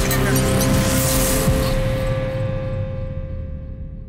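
Sound design for an animated logo outro: a rush of hiss over a low rumble that dies away after about a second and a half, leaving a steady ringing chord that slowly fades.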